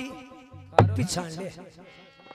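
A man's voice drawn out in a nasal, buzzing sung phrase, broken a little under a second in by one loud, low thump.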